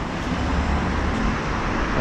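Street traffic noise: a steady low rumble from road vehicles.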